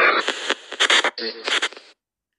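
SP Spirit Box 7 phone app sweeping through FM radio stations, playing its speaker output as a rapid string of chopped broadcast fragments with snatches of voices. About five fragments come in quick succession, each cut off abruptly, and the sweep goes quiet shortly before the end.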